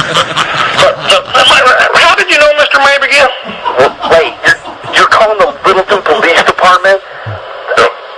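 Speech only: men talking back and forth on a recorded telephone call.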